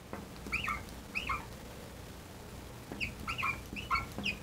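Marker squeaking on a glass lightboard while numbers are written: a run of short squeaks about half a second to a second and a half in, and another run from about three seconds in.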